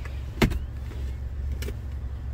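Steady low hum inside a pickup truck's cab, with a sharp knock about half a second in and a fainter click near the end.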